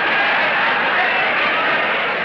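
Crowd of spectators shouting and chattering in a dense, steady din of many voices.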